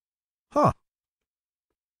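A single short "huh" in a man's voice about half a second in, falling in pitch; otherwise silence.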